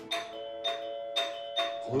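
A doorbell ringing again and again, about four chimes half a second apart: someone ringing the apartment door insistently.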